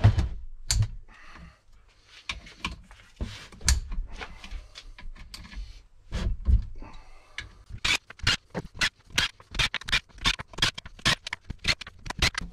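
Socket ratchet clicking as the casing bolts around a manual gearbox are undone, with clinks of steel bolts. The clicks come scattered at first, then in a quick even run of about four a second near the end.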